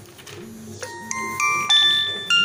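A tune of ringing, bell-like chime notes: about four notes roughly a third of a second apart, starting a little before the middle and growing louder toward the end.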